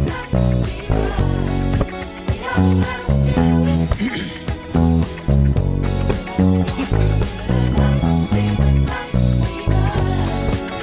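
Electric bass playing a busy, plucked disco-style bass line, the notes stepping up and down in the low register, over a beat of drums and other instruments.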